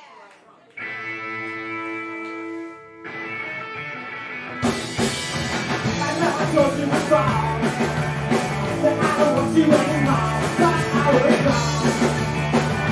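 Live rock band starting a song. Electric guitar rings out a held chord about a second in, and the full band with drums and bass comes in loud about four and a half seconds in.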